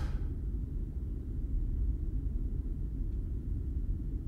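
Steady deep ambient rumble with nothing over it and no change: the background drone laid under this atmospheric sci-fi audio drama, the hum of the space station setting.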